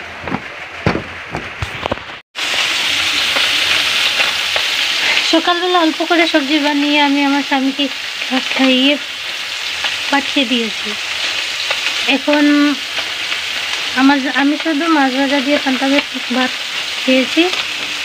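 Food frying in hot oil in a pan: a steady sizzle that starts after a brief dropout about two seconds in, with a few sharp knocks before it. From about five seconds in, a wavering pitched tone comes and goes over the sizzle.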